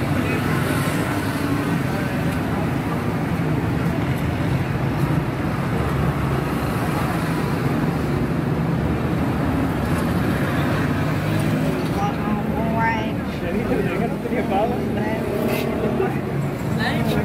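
Steady background din with indistinct voices talking; the talk grows more distinct near the end.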